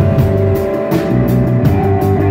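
Live rock band playing an instrumental passage: an electric bass line stepping between low notes under a sustained held note, with a steady drum-kit beat and cymbals.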